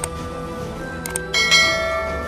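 Subscribe-animation sound effects over background music: quick mouse clicks at the start and again about a second in, then a bright bell chime that rings on and fades. The chime is the notification-bell ding and the loudest sound.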